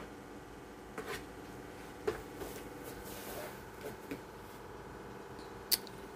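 Thick cake batter poured from a plastic bowl into a metal bundt pan: faint soft clicks and taps, two clearer ones about a second apart, over a faint steady hum.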